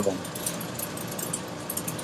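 A steady background hiss with faint, scattered crackles and ticks, from the water and pumps of a running reef aquarium system.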